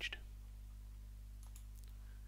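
A few faint clicks from a toolless server module being unclipped from its chassis, over a steady low hum.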